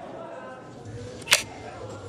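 A single sharp click about 1.3 s in, typical of a soft-tip dart striking an electronic dartboard, over faint murmur of voices in a hall.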